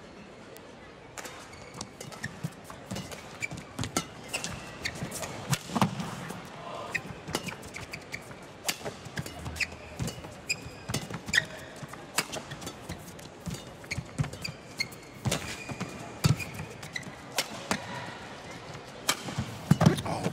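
Badminton rally: the shuttlecock is struck back and forth by rackets in sharp, irregular hits, and players' shoes squeak briefly on the court during their footwork.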